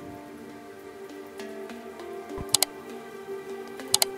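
Soft background music of sustained synth-like notes that change pitch now and then, over a faint crackle. Two quick double clicks, like mouse clicks from an on-screen subscribe animation, come about two and a half seconds in and near the end.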